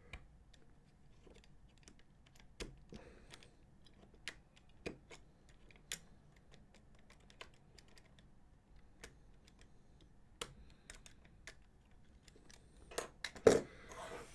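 Faint, irregular clicks and scrapes of a utility knife blade trimming down the ridges on a small plastic model part. Near the end a louder clatter as the knife is put down on the cutting mat.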